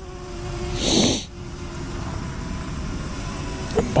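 Steady low outdoor rumble with a faint steady hum, and a short hiss about a second in.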